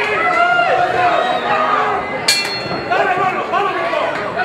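Spectators' chatter and calls around a boxing ring, with a single sharp ring of a bell a little over two seconds in that sustains briefly: the bell starting the round.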